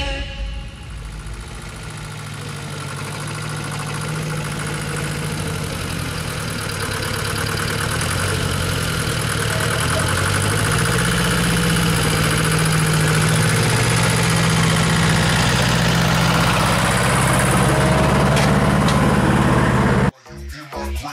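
An old farm loader's engine running at idle, growing gradually louder, its pitch stepping up slightly about halfway through.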